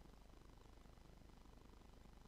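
Near silence: only a faint steady low hum of background noise.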